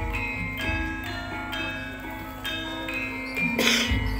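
Javanese gamelan playing: bronze metallophones strike ringing notes in a steady run over a held low note, with a short noisy crash near the end.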